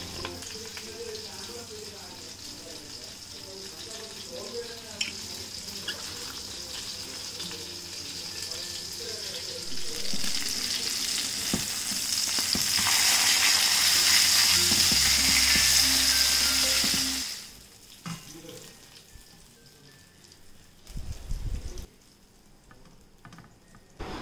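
Fish steaks sizzling as they shallow-fry in hot oil in a pan. The sizzle grows much louder about halfway through and cuts off suddenly a few seconds later.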